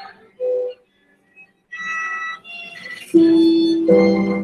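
Violin playing: a long, held low note starts about three seconds in and runs on loud and steady, after a few short, scattered sounds.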